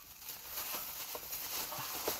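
Faint handling noise: soft rustling and a few light clicks as a pack of greeting cards is moved and set aside.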